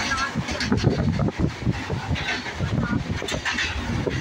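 A freight train of goods wagons rolling past close by: a steady, irregular rumble of steel wheels running over the rails. People's voices are heard over it.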